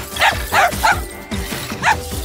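A cartoon dog character barking in four short, high yips, the last one after a pause of about a second.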